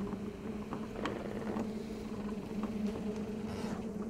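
A low steady hum with a few faint clicks scattered through it.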